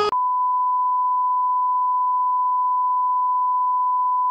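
A steady, unbroken 1 kHz test-tone beep, the reference tone that goes with SMPTE colour bars. It cuts in just after a man's scream breaks off, a fraction of a second in.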